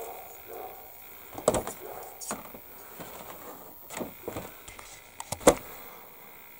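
Grey injection-moulded plastic sprue of a 1/72 model aircraft kit being handled and turned in the hands, giving several sharp clicks and light knocks, the loudest near the end.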